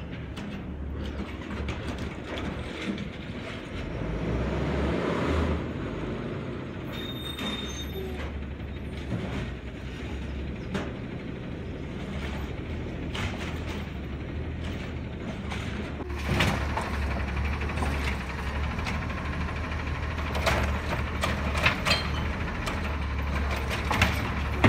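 Automated side-loader garbage truck's diesel engine running as its hydraulic arm lifts, dumps and sets down a cart, the engine swelling about five seconds in. Several sharp clanks of the arm and cart come in the last third.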